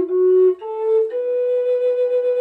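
Wooden Native American style flute in B minor, played slowly up its pentatonic minor scale one note at a time. It steps up twice, about half a second apart, to a high note held steadily from about a second in.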